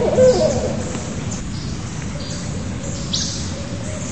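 Barred owl calling: a burst of wavering, excited hoots that breaks off within the first second. Small birds chirp faintly high above it, once clearly about three seconds in.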